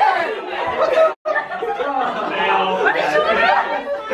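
Chatter of several people talking over one another, broken by a sudden brief gap about a second in.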